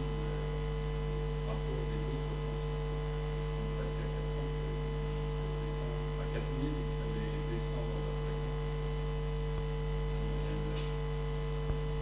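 Steady electrical mains hum, a constant buzz made of several steady tones, with faint off-microphone voice traces underneath.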